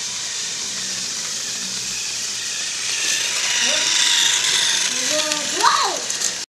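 Battery-powered toy train's motor and gears whirring, growing louder about halfway through as it runs along the track. Short voice-like calls come near the end.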